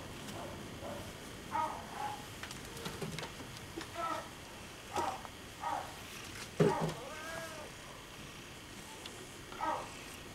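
Domestic cat meowing repeatedly in short calls, about eight, with one longer call that rises and falls in pitch just past the middle.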